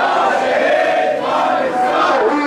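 A crowd of marchers chanting a slogan together, many voices blurred into one loud mass.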